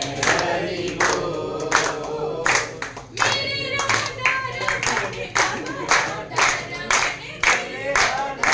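A small group singing a devotional song together, with hand-clapping keeping a steady beat of about two claps a second.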